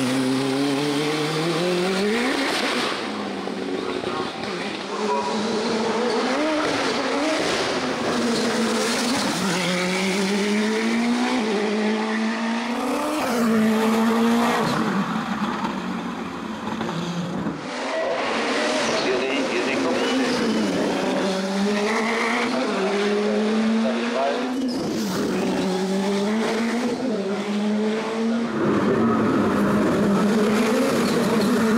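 Nova NP 01 hill-climb prototype's turbocharged 1.75-litre Honda engine at full throttle uphill, its pitch rising again and again and dropping sharply at each gear change. The engine fades a little midway and comes back louder near the end.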